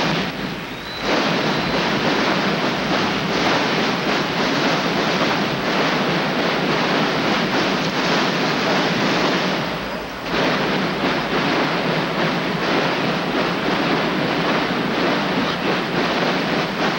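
Massed snare drums of a large marching drum corps playing together: a dense, continuous rattle that dips briefly near the start and again about ten seconds in.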